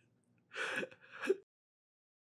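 Two short breathy sighs, the tail end of an elderly man's laughter, about half a second apart; the sound then cuts off abruptly.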